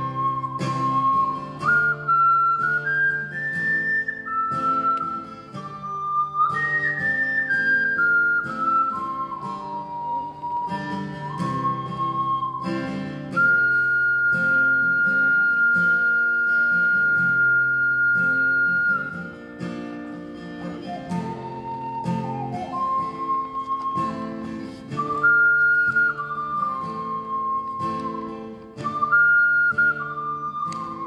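Ocarina playing a slow melody over acoustic guitar accompaniment, with one long held high note in the middle.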